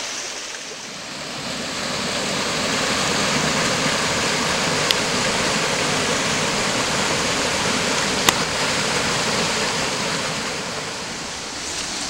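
Steady rush of a small forest creek and its cascade pouring over boulders into a pool. Two brief faint clicks come about five and eight seconds in.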